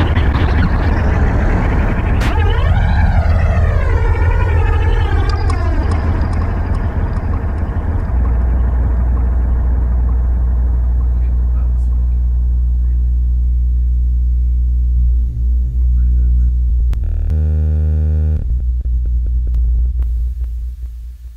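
Electronic music from a live synthesizer set: a deep, sustained synth bass under a wavering, sweeping synth sound in the first few seconds. The upper sounds then die away, leaving the bass, with a brief buzzy chord near the end.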